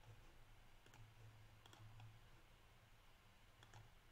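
Near silence: a few faint computer mouse clicks over a low steady hum.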